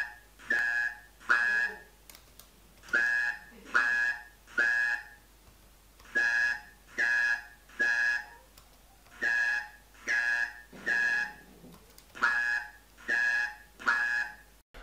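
Synthesized speech-like syllables played as ABX trials: five sets of three short buzzy syllables, about 0.7 s apart within a set, with a pause of about a second between sets.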